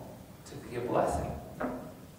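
A man's voice speaking a short phrase of a sermon about a second in, followed by a brief knock near the end.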